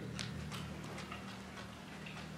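Quiet room tone with a low steady hum and a few faint, irregular clicks.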